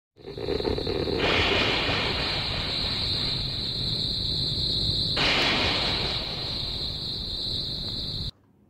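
A loud, steady hiss of static-like noise with a bright high band in it. It shifts in tone about a second in and again about five seconds in.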